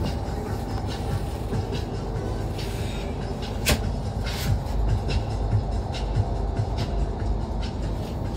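Cabin of a moving intercity bus: steady engine and road rumble with occasional short rattles and knocks, and music playing faintly underneath.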